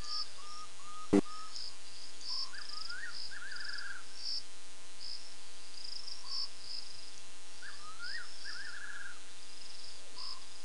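Crickets chirping steadily in short repeated pulses. A sharp click comes about a second in. Twice a lower call sounds, a quick rise and fall followed by a trill.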